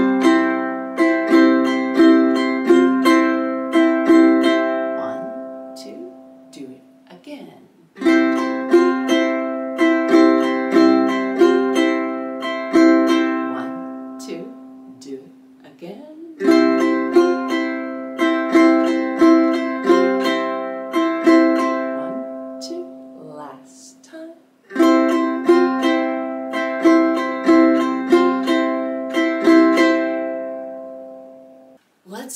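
A ukulele strummed slowly in the Super Active Island Strum on a C chord changing to Csus4, played as four separate passes. Each pass is a few seconds of strums, then the chord is left to ring and fade before the next pass starts.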